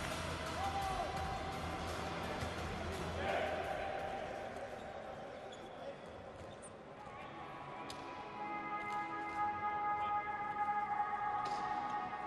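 Indoor arena ambience: music over the loudspeakers with voices in the hall. The music settles into long held notes in the second half, and a couple of sharp knocks come near the end.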